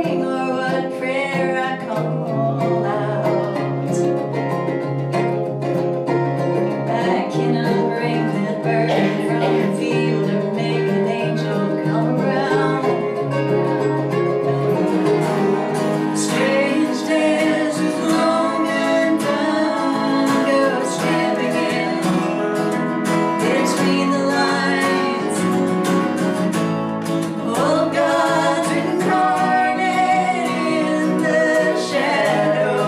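Live folk duo playing acoustic guitar and mandolin, changing about halfway to acoustic and electric guitar, with singing.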